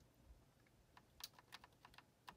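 Faint, quick keypresses on the Apple IIe keyboard, a run of sharp clicks starting about halfway in, as arrow keys step the highlight down a ProDOS file list.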